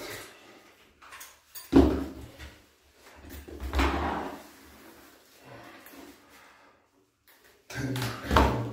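Resistance-band bar kit being handled and moved: the bar, straps and metal clips knock and rattle. A sharp knock comes about two seconds in and a longer clatter around four seconds in.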